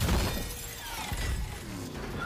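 Film sound effects of a race-car crash: a sudden heavy impact at the start, followed by breaking and shattering debris that fades away.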